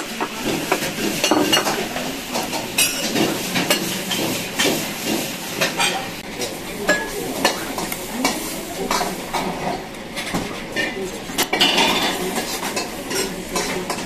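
Busy restaurant-kitchen clatter: frequent clinks and knocks of dishes, utensils and pots over a steady hiss of cooking.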